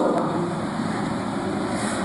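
Steady background noise, an even hiss with no speech and no distinct events.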